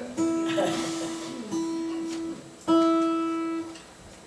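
Acoustic guitar being tuned: one string plucked three times at the same pitch, each note ringing about a second, while the tuning peg is adjusted. The strings have drifted with temperature and humidity changes.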